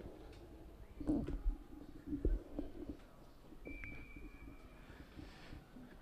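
Faint ice-rink sounds during a stoppage in play: distant indistinct voices, a few light knocks, and a faint steady high tone lasting under two seconds about midway.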